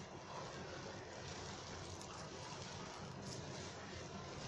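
Low steady background noise with faint soft rustling of a hand squeezing and mixing crumbly rice flour dough in a plastic bowl.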